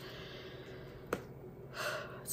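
A woman breathing audibly in a pause in her talk: a soft, drawn-out breath out, a single small click just past halfway, then a quick breath in near the end.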